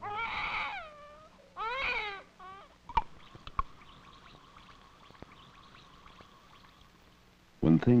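A voice lets out two long, wavering moans with no words. About three seconds in, two tablets drop into glasses of water half a second apart, followed by faint, crackly Alka-Seltzer fizzing.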